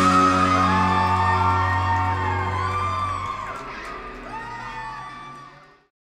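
Live band's final chord ringing out on electric guitars and bass, the bass dropping out about halfway through, with whoops and cheers from the audience over it, before the sound fades away near the end.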